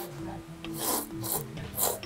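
A person slurping ramen noodles from a bowl: several loud, quick slurps, the last the loudest.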